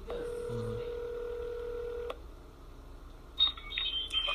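Telephone ringback tone of an outgoing call: one steady tone lasting about two seconds, followed near the end by a short run of higher beeps.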